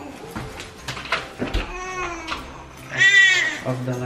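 A newborn baby crying: a short wail about halfway through and a louder, higher one near the end, with a few light clicks and knocks around it.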